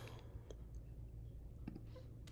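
A few faint, scattered clicks from a computer mouse and keyboard being used at a desk, over a low steady hum.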